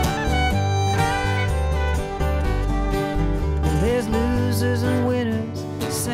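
Acoustic string band playing an instrumental passage: fiddle over strummed acoustic guitars and upright bass. The bass drops out about four seconds in.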